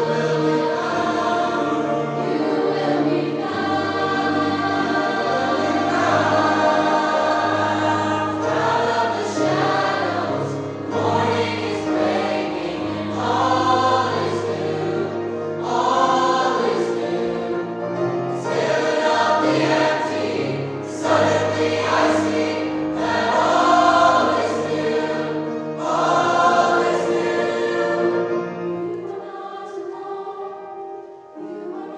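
Mixed high school choir of male and female voices singing a choral piece in phrases, with sustained low notes beneath; the sound tapers off near the end.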